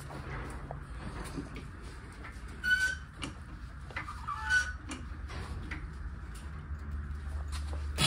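Floor jack being pumped with its long handle to raise the car: scattered light clicks and two short squeaks, about 2.7 s and 4.5 s in, over a steady low hum.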